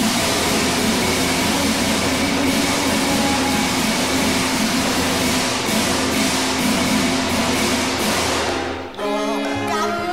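Cantonese opera music: the percussion section plays a loud, dense passage with a steady low ringing under it. At about nine seconds it breaks off and stringed instruments start a melody.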